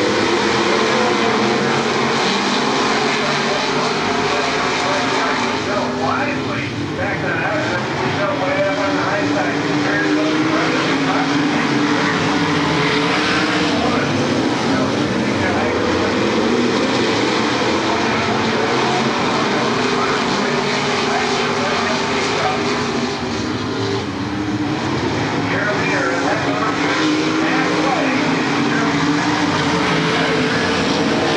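A field of dirt modified race cars' V8 engines running at racing speed, a loud continuous pack sound whose pitch sweeps up and down as cars come past.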